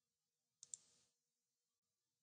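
A computer mouse button clicking once, two quick faint ticks close together about two-thirds of a second in, amid near silence.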